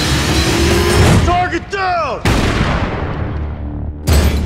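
Trailer soundtrack of music and sound effects: a dense, noisy stretch gives way to a falling whine about a second and a half in, which is cut off by a sudden hit that rings and fades away over the rest.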